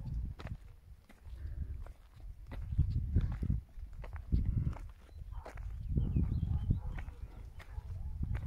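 Footsteps on dry dirt, uneven and scuffing, with short clicks scattered through and a low, gusty rumble on the microphone.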